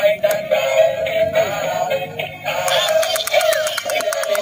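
Battery-operated musical toys playing electronic children's songs with synthesized singing over a steady held tone; about two and a half seconds in, a fast, even clicking beat joins in.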